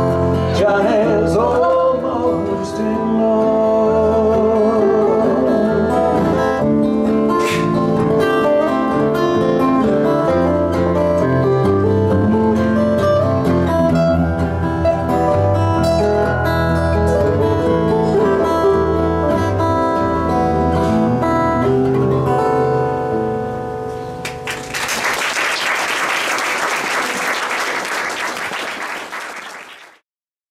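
Small live band of two acoustic guitars, electric bass and a woodwind playing the instrumental close of a folk song, which ends about 24 seconds in. Audience applause follows and fades out at the end.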